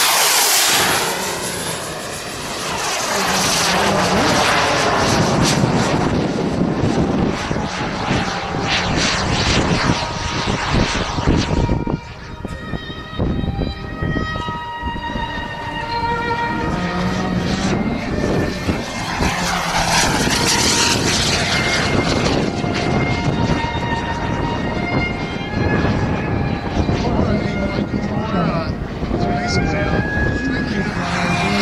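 Turbine engine of a large radio-controlled scale F-16 model jet, taking off and flying, with a loud rushing whine that rises and falls as it passes close twice: just after the start and about twenty seconds in.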